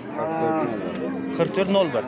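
Cattle mooing: one long moo that rises and falls in pitch, sliding down near the end.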